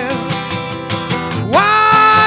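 Steel-string acoustic guitar strummed in quick, even strokes between sung lines of an acoustic folk song. About a second and a half in, a male voice comes back in with a note that slides up and is held over the guitar.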